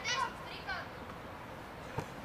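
Young footballers' high voices shouting across an open pitch: two or three short calls in the first second, then open-air background. A single short knock comes right at the end.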